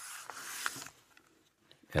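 Paper rustling as the pages of a book are handled and turned, with a couple of light clicks, for about a second before it goes quiet.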